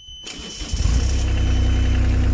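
JCB 8018 mini digger's diesel engine cranked on the starter, catching within about half a second and settling into a steady idle, just after its fuel filter was replaced and the fuel system bled.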